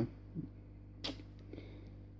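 Low steady electrical hum, with a single sharp click about a second in.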